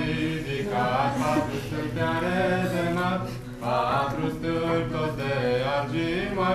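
A group of voices singing a Romanian Christmas carol (colindă) in long, held phrases, with a brief break about three and a half seconds in.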